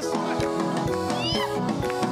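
Live worship music: a praise team singing a Swahili gospel song over a band with a steady beat, with hand claps and a high sliding cry about halfway through.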